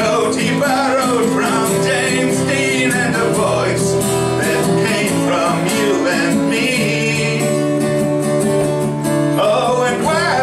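A man singing with an acoustic guitar playing along, at a steady level throughout.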